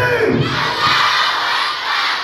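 A large crowd shouting and cheering together, a dense mass of voices with no single words standing out. It swells a moment in and eases near the end.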